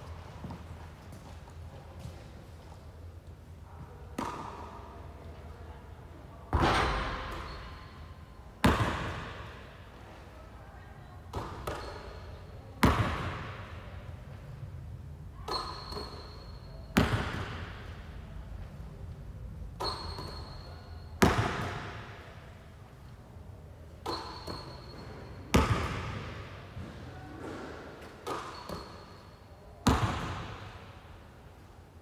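A basketball bouncing hard on a court floor again and again during free-throw shooting, about every four seconds. Each loud bounce echoes and dies away, and a lighter knock comes a second or two before most of them.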